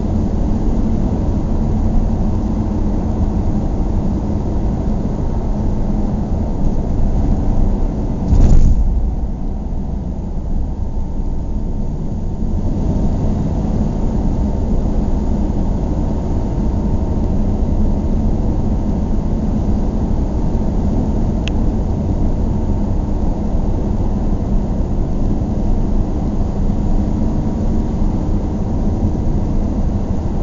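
Car driving slowly on a residential road: steady low engine and tyre noise, with one sharp thump about eight seconds in.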